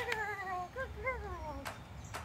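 Dog whining: a long high whine that slides down in pitch, then a few short rising-and-falling whines, after a sharp click at the very start.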